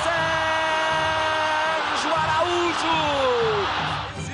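A football commentator's drawn-out goal cry, "Gol!", held on one high pitch for nearly two seconds, then wavering and sliding down until it trails off near the end, over the steady noise of a stadium crowd.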